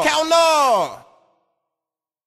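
A voice gliding down in pitch twice with no beat behind it, then cutting to silence about a second in as the recording ends.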